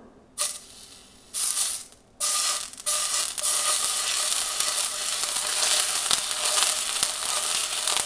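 Raw oxtail pieces being laid one at a time into an overheated, smoking frying pan, each one starting a sizzle as it hits the metal: two short bursts of sizzling at first, then continuous searing sizzle from about two seconds in.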